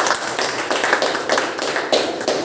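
People clapping their hands in applause, a quick irregular run of claps.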